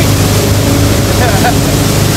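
Tow boat's engine running steadily under way, a constant low hum under the rush of its churning wake.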